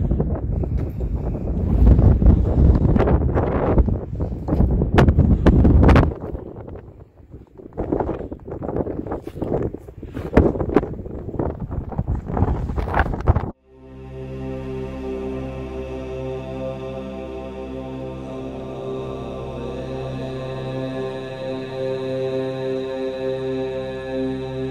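Wind buffeting the microphone in gusts. About thirteen seconds in it cuts off suddenly and sustained, droning music of held tones takes over.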